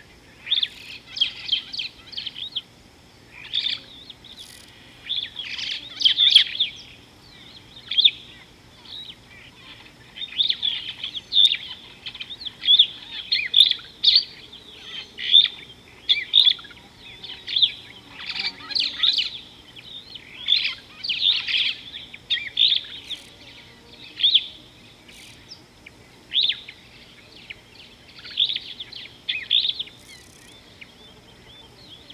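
Wild birds chirping and singing: many short, high calls in quick phrases, repeated every second or so.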